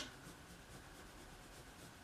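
Near silence, with faint scratching of a liquid-glue bottle's applicator tip drawn along a cardstock edge.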